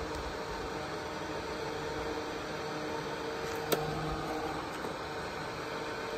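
DeWalt DCE512B 20V brushless battery fan running on its highest setting: a steady whir of moving air with a faint steady hum under it. A single short click about two-thirds of the way through.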